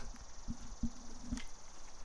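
Two-foot concrete broom dragged lightly and slowly across a freshly floated wet concrete slab for a fine broom finish: a faint soft scraping, with three short low knocks.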